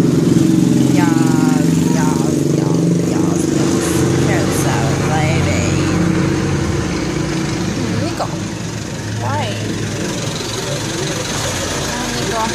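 A motor vehicle engine idling, a steady low drone that shifts lower about seven seconds in, with scattered voices over it.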